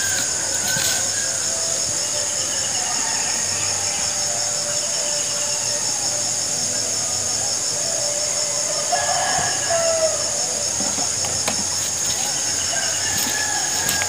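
Steady high-pitched chorus of insects, with a few short chirps over it that are loudest about nine to ten seconds in, and a few faint knocks.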